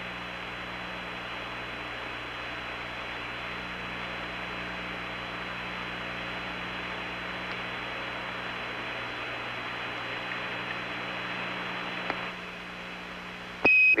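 Steady hiss of an open radio voice channel with a low electrical hum underneath. The hiss drops away about 12 seconds in, and a short high beep sounds just before speech returns.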